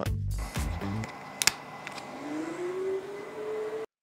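An ignition-style key switch on a homemade RC ground control station clicks as it is turned, followed by a rising whine that climbs steadily for about two seconds as the station powers up, then cuts off suddenly.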